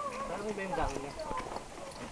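People talking indistinctly as they walk, with footsteps on a dirt trail.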